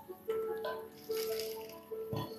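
Ice rattling in a tumbler during a sip through a straw, over faint background music with a few held notes.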